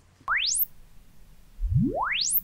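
Sine-sweep test tones from the Sonarworks SoundID Reference room measurement, played through studio monitor speakers. A short rising sweep comes about a quarter second in, then near the end a second sweep climbs smoothly from deep bass upward.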